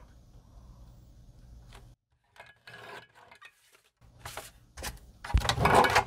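A paper trimmer's blade drawn along its track, cutting a thin strip off a sheet of cardstock: a short scratchy rub about halfway through. A few clicks follow, then a louder rustle and a thump of paper sheets being handled near the end.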